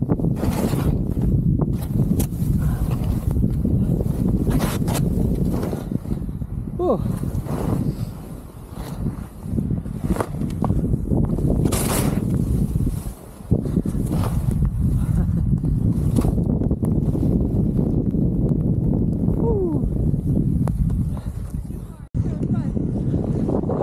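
Wind rushing over the camera microphone along with the hiss of skis running through deep powder. Scattered sharp clicks and knocks break through, and the rush drops away briefly twice: near the middle and just past it.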